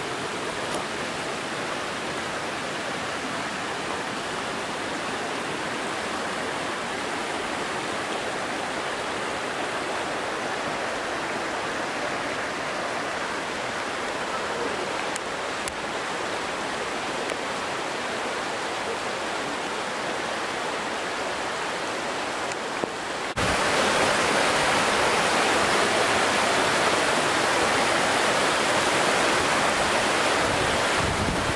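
Shallow mountain river rushing over rocks in a steady, even roar of water. About 23 seconds in it jumps suddenly louder, close beside white-water rapids below a small weir.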